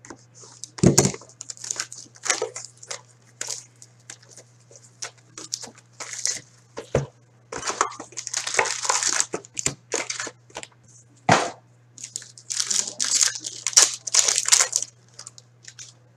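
A box of 2017-18 Upper Deck Artifacts hockey cards being cut open with a box cutter and unpacked: irregular crinkling and tearing of wrap and packs, with cardboard knocks about a second in, near the middle and around eleven seconds, over a steady low hum.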